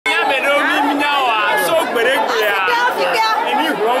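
Several people talking at once close by, their voices overlapping in lively chatter.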